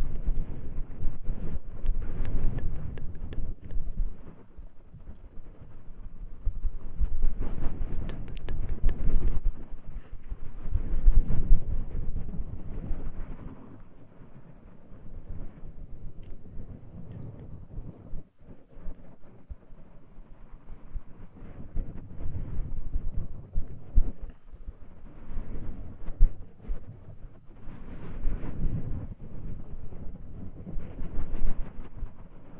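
Hands rubbing and massaging the silicone ears of a 3Dio binaural microphone in rough strokes. The result is a loud, low, muffled rubbing that swells and fades every few seconds and eases off for a while in the middle.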